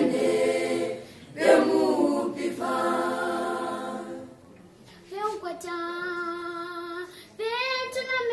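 Choir singing a Namibian gospel song unaccompanied, full and loud for the first few seconds with a short breath near one second. From about five seconds in a single, softer voice carries the melody alone.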